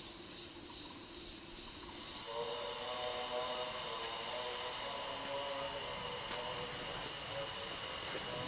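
Night-time insect chorus in tropical forest. A faint pulsing chirr at first, then about two seconds in a loud, steady, high-pitched insect drone sets in, with a lower steady hum beneath it.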